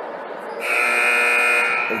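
Gymnasium scoreboard buzzer sounding once for about a second and a half, a steady harsh tone.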